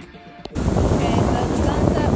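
Soft background music that cuts off about half a second in, when loud wind buffeting a phone microphone takes over, with people's voices over it.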